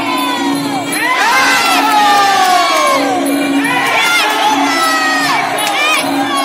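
Fight crowd shouting and cheering, many voices calling out over one another, growing louder about a second in.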